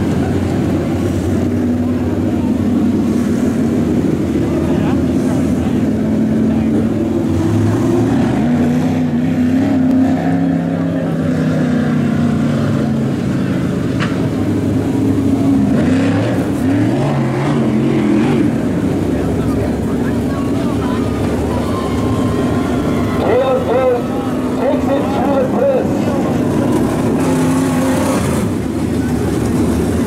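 Dirt late model race car engines running at low speed, their pitch rising and falling as the cars rev up and roll under caution.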